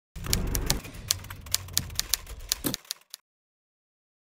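Rapid typing on a computer keyboard: a quick, uneven run of key clicks over a low rumble. It stops about three seconds in.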